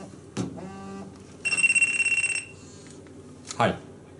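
Mobile phone ringing: one trilling electronic ring of about a second, starting about a second and a half in, with a short knock shortly before it. A man answers "Hi" near the end.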